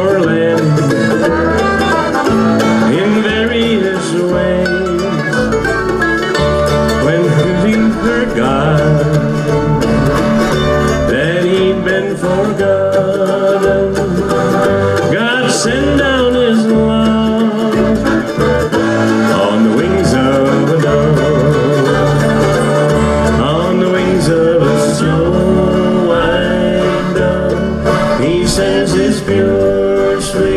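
Bluegrass band playing an instrumental break: acoustic guitar, mandolin, five-string banjo and accordion over an upright bass plucking steady low notes on the beat.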